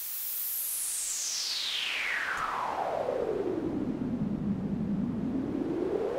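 Pink noise through a narrow band-pass filter whose centre frequency is swept slowly by a sine wave, generated in SuperCollider. The band of hiss glides steadily down from very high to a low rumble about three-quarters of the way through, then starts rising again.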